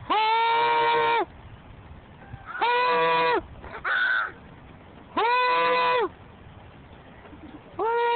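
Playground swing squeaking at its hangers as the child swings: one long squeak of the same steady pitch every two and a half seconds or so, once per swing, four times. A short, rougher sound comes between the second and third squeaks.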